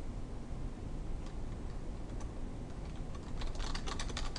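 Computer keyboard being typed on: a couple of lone clicks, then a quick run of keystrokes in the last second or so, over a low steady hum.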